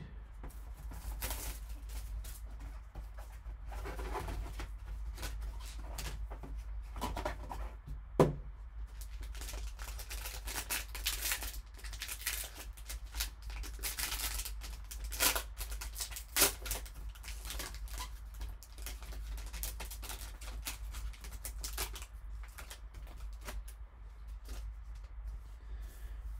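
Plastic wrapping on a sealed trading-card box being torn off and crinkled by gloved hands, an irregular crackling rustle with a sharp click about eight seconds in.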